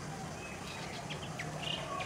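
Bronzed drongo calling: a quick run of short, sharp chirps and high notes from about halfway through, over a faint steady low hum.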